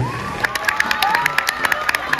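Audience clapping and cheering, with many sharp claps starting about half a second in and a few shouts rising above them.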